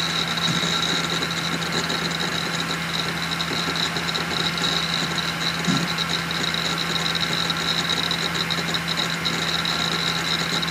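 Two Western Digital Raptor 150 GB 10,000 rpm hard drives in RAID 0 thrashing under heavy disk activity during an operating-system install. They make rapid, continuous seek chatter over a steady spindle hum and a high whine.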